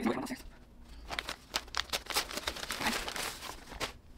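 Paper wrapping around a potted plant crinkling and rustling as it is handled and unwrapped, in quick irregular crackles.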